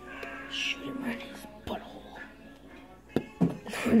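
Faint low voices or whispering with a music-like sound under them, broken by a few sharp clicks, the loudest a little after three seconds in.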